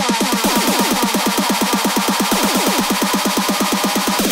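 Electronic techno track: a fast run of falling synth notes, about ten a second, with little deep bass under it. The pattern changes near the end as the section turns over.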